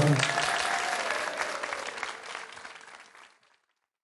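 Studio audience applauding as the song ends, the applause fading steadily and cutting to silence about three seconds in.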